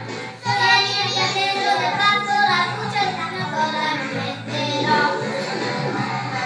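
Children singing an Italian children's song along with a karaoke backing track.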